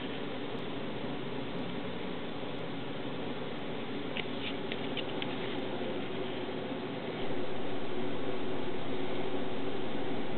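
Steady hum of a spectrum analyzer's cooling fan while the freshly powered-up IFR 2398 runs its power-on calibration, with a few faint clicks around the middle. The hum steps up in level about seven seconds in.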